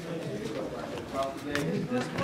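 People talking in the background of a small room, low murmured voices with no clear words, and a few sharp clicks near the end.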